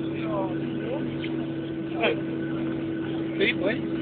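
Steady cabin hum inside a Boeing 737-700 as it rolls slowly down the runway after landing, with faint passenger voices now and then.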